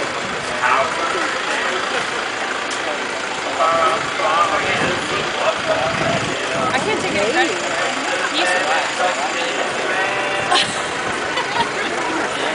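Background chatter of several people talking at once, over a steady noise, with a couple of short knocks.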